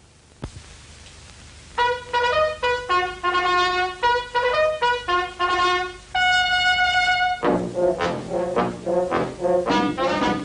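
Old film-score recording: after a faint hiss and a single click, a solo trumpet plays a short phrase of separate notes from about two seconds in and ends on a long held note. Then a fuller brass band with lower brass comes in near the end, playing short, repeated, rhythmic notes.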